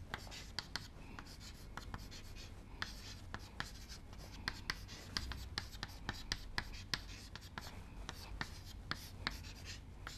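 Chalk writing on a chalkboard: a run of irregular light taps and short scratches as the letters are written stroke by stroke.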